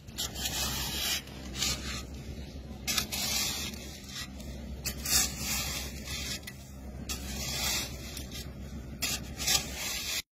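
Rough scraping strokes, one every second or two, over a low steady rumble.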